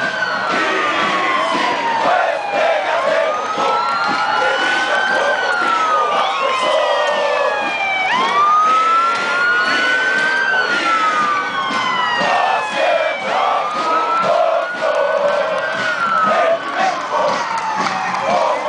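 Several overlapping siren-like wails over steady crowd noise. Each wail rises in pitch over a second or two and then slides back down, with new ones starting throughout.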